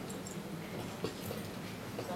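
Indistinct steady room noise from a crowd gathered in a hall, with a single sharp click about a second in.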